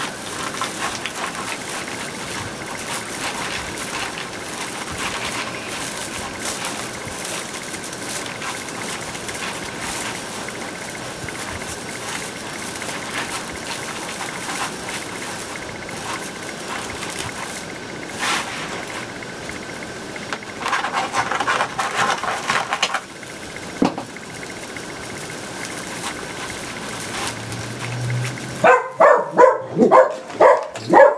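Plastic deco mesh rustling and crinkling as hands work it, a steady patter of fine crackles. Near the end a dog starts barking, a quick run of barks.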